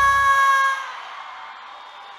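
Concert music ends on a long held note that fades out within the first second, with the bass dropping away first. After that, a large crowd cheers faintly.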